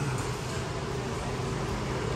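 Steady background noise: a low hum with an even hiss and no distinct events.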